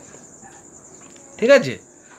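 Steady high-pitched insect trilling, like crickets, with one short spoken word about one and a half seconds in.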